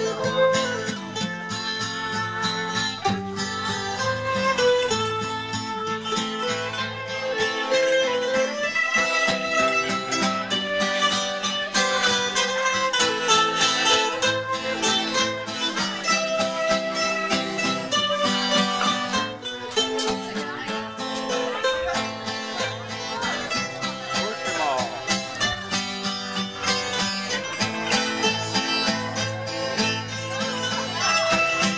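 Two bowl-back mandolins and an acoustic guitar playing a tune together, live, with rapidly picked mandolin notes over the guitar.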